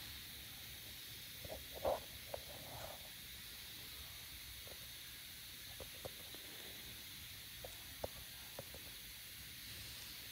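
Quiet steady hiss of room tone with a dozen soft clicks and taps, the loudest about two seconds in, from gloved hands handling a pair of ignition coils.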